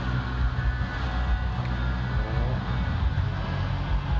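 Low, steady rumble of the Surf Ranch wave machine, a hydrofoil pulled along the pool by a vehicle on a rail, with the wave washing through the pool, under music from the event's PA.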